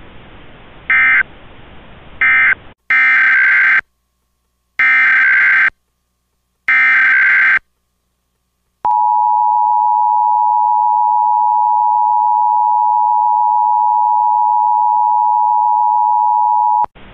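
Three short electronic beeps over a faint hiss, then three one-second bursts of EAS SAME header data tones. About nine seconds in, the steady EAS attention signal starts and sounds without a break to the end.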